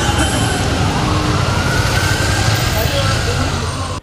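Busy street noise with an ambulance or police siren sounding faintly among crowd voices and traffic.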